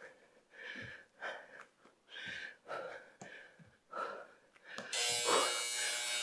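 A woman's hard, rhythmic breathing during a plank exercise, short puffs about twice a second. About five seconds in, a steady electronic buzzer starts, the interval timer signalling the end of the 20-second work round.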